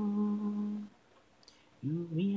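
A cappella voice holding a steady, level note, which stops just under a second in. After a short pause, the next note begins near the end.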